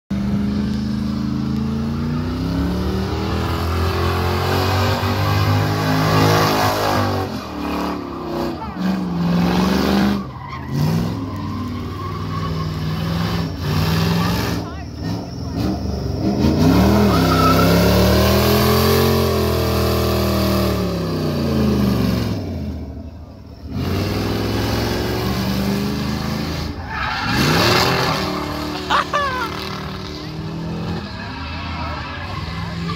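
Lincoln's V8 revving hard during a burnout, its pitch rising and falling again and again, with the tyres screeching as they spin. The engine note drops off briefly a few times between pulls.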